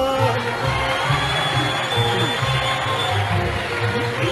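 Concert audience applauding and cheering as the singer's phrase ends, over the Arabic orchestra that keeps playing a pulsing low accompaniment.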